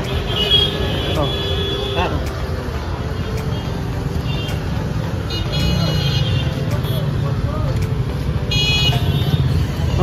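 Street traffic with a steady engine and road rumble, and several vehicle horn toots: a long one in the first couple of seconds, then shorter ones about five and a half seconds in and near nine seconds.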